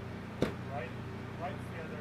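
Steady low hum of network rack equipment running, with faint background voices and a single sharp click about half a second in.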